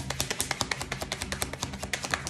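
A tarot deck being shuffled from hand to hand: a rapid, even run of light card clicks, about ten a second.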